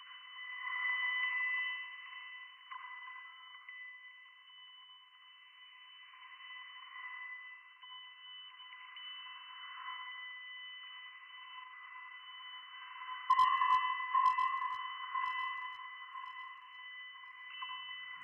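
Electronic sound-art soundtrack: a steady high, sonar-like tone over a thin filtered hiss, with a short run of clicks about thirteen seconds in.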